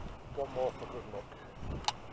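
A low, uneven rumble of wind on the microphone, with one short spoken word about half a second in and a single sharp click near the end.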